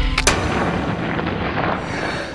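An artillery-style blast sound effect: a sudden loud bang about a quarter second in cuts off the music, followed by a long, rushing rumble.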